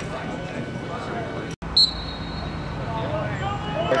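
Indistinct voices of players and a coach on a sports field, with a short, high whistle-like tone about two seconds in.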